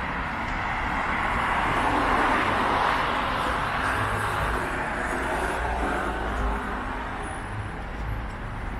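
Road traffic on the street alongside: a steady wash of tyre and engine noise that swells as a car passes about two to three seconds in.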